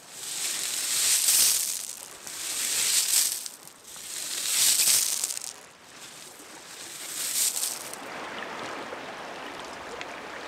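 A person blowing four long, breathy puffs of air into the low opening at the base of a stone kiln. Each blow swells and fades over one to two seconds.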